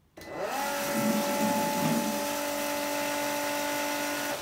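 Milwaukee M18 cordless transfer pump starting up with a rising whine, then running steadily as it self-primes and draws water from one bucket to the other. An uneven lower sound runs under it for the first couple of seconds, and a lower tone joins about two seconds in.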